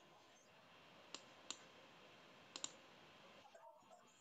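Near silence over a low hiss, broken by four sharp computer-mouse clicks: two single clicks about a third of a second apart, then a quick double click about a second later.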